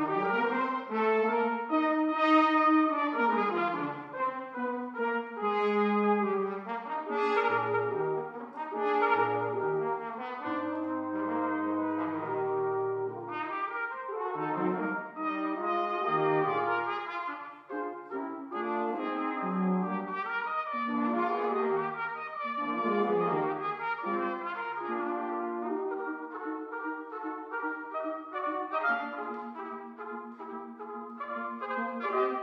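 Brass quintet on 19th-century period instruments (two high brass, horn, trombone and a low bass brass) playing 19th-century French quintet music. The ensemble enters suddenly out of silence at the very start, with the bass voice dropping in underneath now and then.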